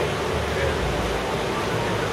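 Steady rushing of the Coquihalla River's whitewater rapids in the canyon, an even, unbroken roar of water.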